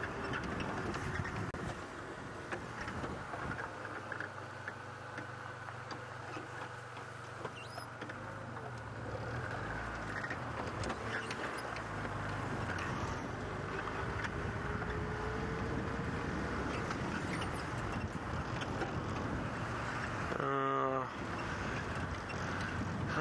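Open Land Rover safari vehicle driving slowly on a sandy dirt track: a steady low engine drone with tyre and body rattle noise, heard from the driver's seat. A short voice-like sound comes near the end.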